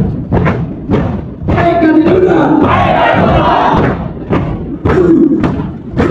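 A large group of cadets shouting a chant in unison, punctuated by many sharp percussive hits in time with their movements.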